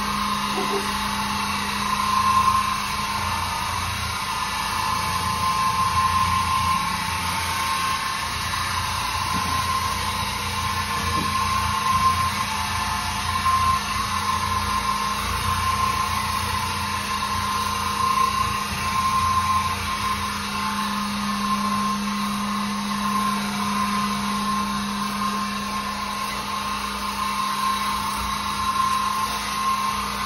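Oreck orbital floor machine running as its pad scrubs a dirty tile floor: a steady motor hum that holds the same pitch throughout.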